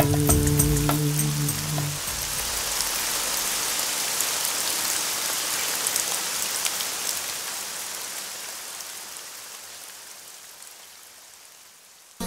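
Rain falling, an even hiss with scattered faint drops, that fades slowly away over about ten seconds once the last notes of the song stop about two seconds in.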